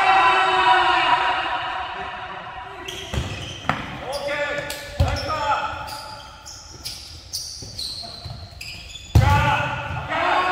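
Futsal ball being kicked and knocking on a hard gym floor a few times, the loudest knock near the end, with short high squeaks of sneakers on the court. Players' voices call out in the first couple of seconds.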